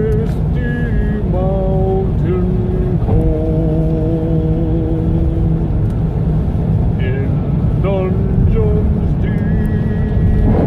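A voice singing long held notes that change pitch every second or so, heard in a car's cabin over the steady low rumble of the engine and road.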